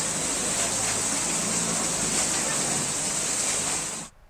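Floodwater rushing past a building, a loud, steady wash of water noise.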